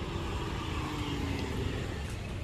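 Low, steady rumble of distant road traffic, with a faint engine hum in the first second or so.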